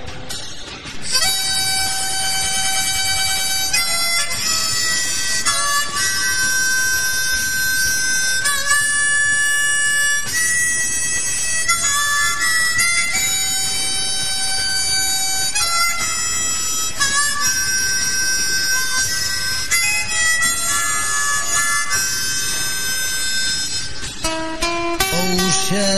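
Blues harmonica playing a melody of long held notes, starting about a second in.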